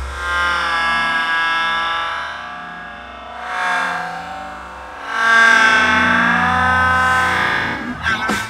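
Loud rock music with distorted, effects-heavy electric guitar chords that swell and fall back, growing loudest about five seconds in.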